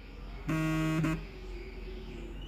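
A single steady, flat-pitched buzzy tone lasting about two-thirds of a second, starting about half a second in, over a faint low hum.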